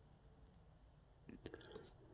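Near silence, with a few faint clicks of a plastic action figure and its accessory being handled about a second and a half in.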